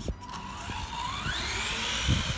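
Tamiya Terra Scorcher RC buggy's stock 540 silver-can brushed electric motor whining as the buggy accelerates away, the pitch rising steadily and then holding high near the end.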